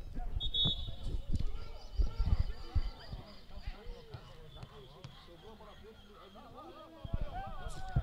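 Faint, distant voices of players calling out across an open football pitch, with a few low thumps in the first three seconds and another about seven seconds in.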